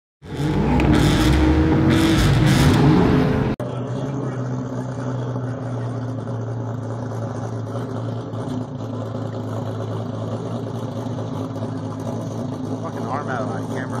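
A loud mix of sports-car engine sounds for the first few seconds, cut off suddenly. Then the engine of a 2000-horsepower Toyota Supra drag car idles with a steady low note.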